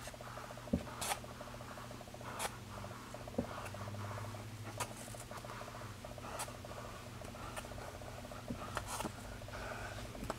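Yarn being wrapped by hand around a piece of cardboard: soft rubbing and handling with scattered light clicks, over a faint steady hum.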